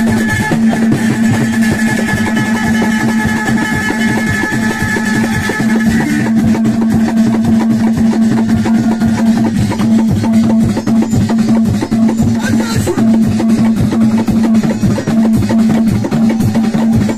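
Moroccan chaabi music: a plucked lotar lute played over a fast, dense hand-drum rhythm. A steady sustained note runs underneath, and a higher held tone fades out about six seconds in.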